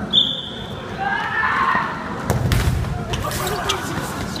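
A short, high whistle blast right at the start, then voices, and from a little past halfway a run of dull thuds and low rumbling as the inflatable bubble-soccer balls bump together on the gym floor.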